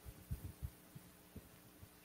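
Faint steady electrical hum with a few soft, low thumps.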